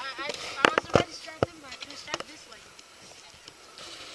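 Voices, with three sharp knocks in the first second and a half; the knocks are the loudest sounds.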